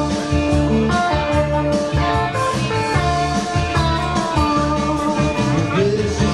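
Live music: an electric guitar playing over a steady, repeating bass rhythm.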